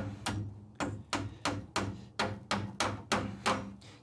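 Steel hammer driving a cable staple over electrical wire into a wooden stud: a steady run of about a dozen sharp taps, roughly three a second.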